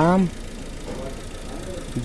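Chevrolet Captiva's four-cylinder engine idling faintly and steadily, after a short drawn-out spoken 'a...'. Its cylinder 1 ignition coil is barely being fired because of a failing coil-driver transistor in the ECU, which gives the engine a misfire.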